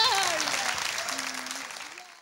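Applause that fades away, with a voice calling out over it in the first second.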